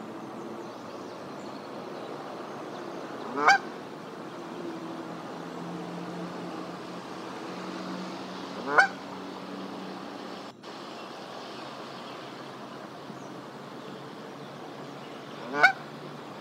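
A Canada goose honking: three single honks, each rising in pitch, about five to seven seconds apart.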